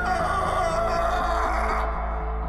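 Dark ambient film score: held drone tones over a deep low rumble, with a high hissing layer that cuts off suddenly near the end.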